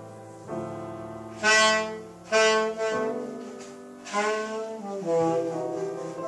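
Live jazz saxophone playing long held notes, with loud accented notes about a second and a half in, near two and a half seconds and again at about four seconds. Piano plays underneath.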